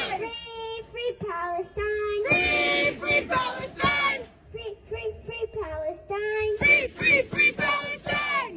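A child chanting "free, free, free Palestine" in a sing-song voice into a handheld microphone, with a crowd chanting the line back in unison twice, call and response.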